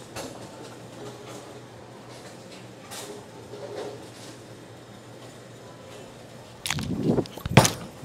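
Low bowling-alley background, then near the end the bowler's approach and slide followed by a loud thud as the bowling ball is laid down onto the lane.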